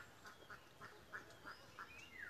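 Near silence with faint bird calls in the background: short chirps repeating about three times a second, then a brief gliding call near the end.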